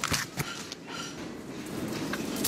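Steady noise of riding on the roof of a moving freight train through overhanging branches, with a couple of light knocks near the start.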